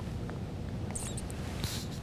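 Room tone in a pause between speech: a steady low hum, with a couple of faint brief rustles about a second in and again near the end.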